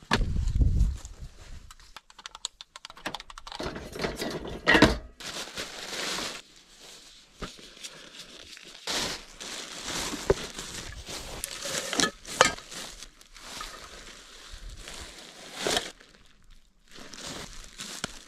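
Plastic trash bag rustling and crinkling as litter is picked up and dropped into it, with irregular handling clicks and knocks. There is a low thud in the first second.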